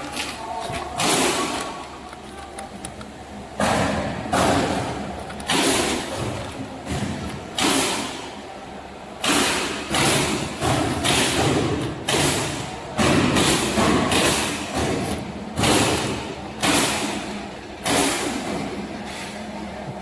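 A running packing machine with a steady low hum and repeated sudden noisy bursts, each under a second long and about one every second or so, coming closer together in the second half.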